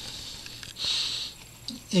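A man's short breath drawn in, lasting about half a second, about a second in. A faint steady low hum runs underneath.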